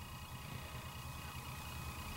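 Faint, steady low hum and hiss with no distinct event: room tone between lines of speech.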